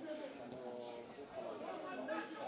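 Faint, distant voices calling and chattering, picked up as the background sound of an outdoor football match.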